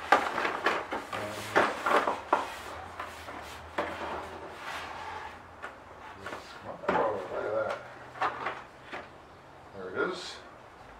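Cardboard packaging being opened and handled: the box's flaps pulled open and folded back, with irregular cardboard scrapes, rustling and small knocks, busiest in the first couple of seconds and again about seven seconds in.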